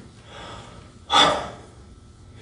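A man's sudden, loud gasp about a second in, fading within half a second: a dramatic intake of breath in the middle of a sermon.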